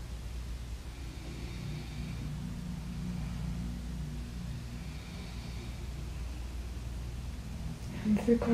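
Steady low background rumble and hum with no speech, with a faint high tone coming and going twice.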